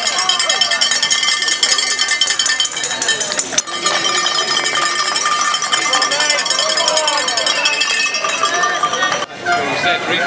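Roadside crowd cheering and shouting encouragement over cowbells ringing continuously. The sound breaks off sharply near the end, then the crowd noise resumes.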